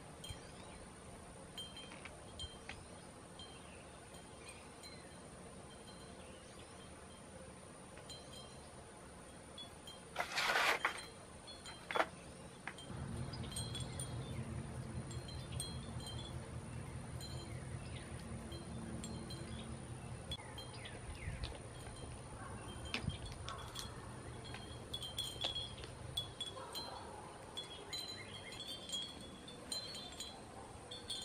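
Glass wind chimes tinkling faintly and irregularly. About ten seconds in there is one short, louder burst of noise, and from about thirteen seconds a low steady hum runs for some thirteen seconds before fading out.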